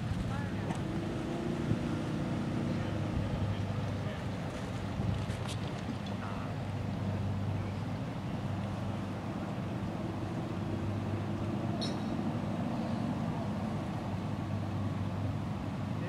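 A steady low mechanical drone, like a motor running in the distance, with a couple of faint clicks about five and twelve seconds in.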